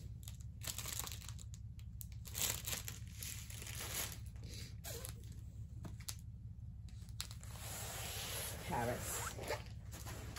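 Plastic crinkling and rustling in irregular bursts as a diamond painting canvas in its clear protective film and a bag of drills are handled, busiest near the end.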